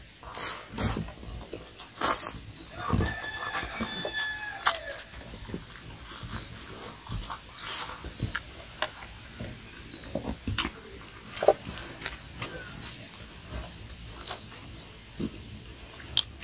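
A man eating rice by hand with his mouth open: chewing and lip-smacking in irregular wet clicks and smacks.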